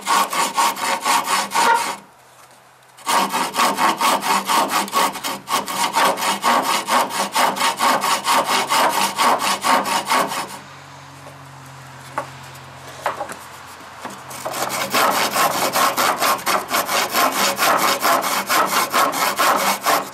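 Old keyhole saw cutting through a stick of dry, seasoned wood in rapid, even back-and-forth strokes. The sawing stops briefly about two seconds in and again for a few seconds around the middle, with a couple of faint knocks, then resumes.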